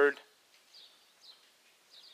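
A man's voice finishes a word, then a pause in which a few faint, short, high bird chirps come from outside.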